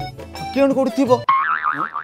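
A wobbling, springy cartoon 'boing' sound effect comes in just past halfway and lasts under a second, over background music.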